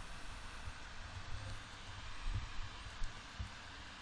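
Low background noise on a desk microphone: a faint low rumble and hiss, with a few soft low thumps about two and three seconds in.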